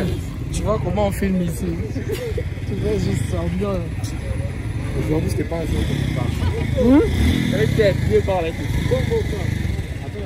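Several people talking over one another, in a language the transcript did not catch, over a steady low rumble of vehicle engine noise.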